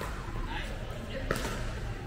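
Pickleball paddles hitting the plastic ball during a rally, with short sharp pops, the clearest a little past a second in, over indistinct background voices.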